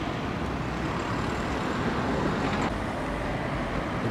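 Steady, even traffic noise from road vehicles, a low rumbling hum with no distinct events.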